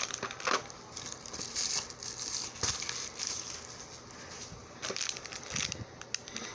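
Plastic packaging crinkling irregularly as it is handled, with a few short knocks as a small cardboard jewelry box is moved and set down on the table.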